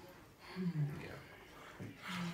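Mostly quiet room tone at the table, broken by one short murmured utterance with a falling pitch about half a second in. A voice starts again right at the end.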